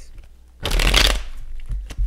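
A tarot deck shuffled by hand: a quick crackling flutter of cards about half a second in, lasting under a second, followed by a few light taps and flicks of card on card.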